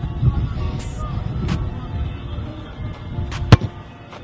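A football struck once near the end, a single sharp thump of boot on ball, over background music.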